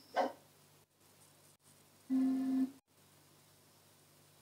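Television sound chopped into fragments as cable channels are switched: a short snatch of audio, then a steady held tone for about half a second, with brief silent dropouts between channels.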